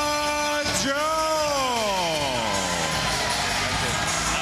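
Boxing ring announcer stretching out the winner's name: a long held call ends about half a second in, then a second long note falls steadily in pitch over about two seconds, with arena crowd noise beneath.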